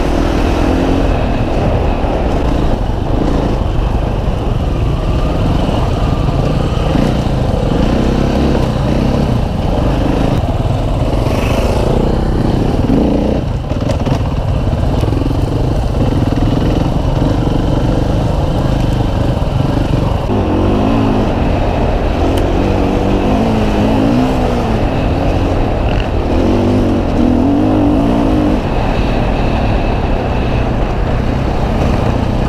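Husqvarna FE 501 single-cylinder four-stroke enduro motorcycle running under way on a dirt trail, the engine note rising and falling with the throttle, most often in the second half.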